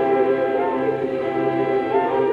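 Opera chorus singing held chords with orchestra in a live stage performance of classical French opera, with a chord change about a second in.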